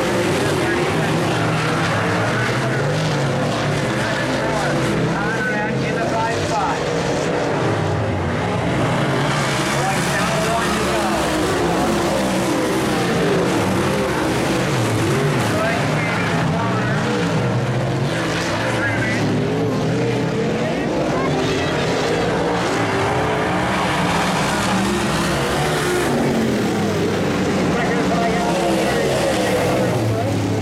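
Several dirt late model race cars running hard around a dirt oval, their V8 engines rising and falling in pitch as they power through the turns and pass by.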